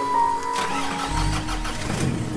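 Car engine cranked by its starter and catching about a second in, settling into a low idle, under background music.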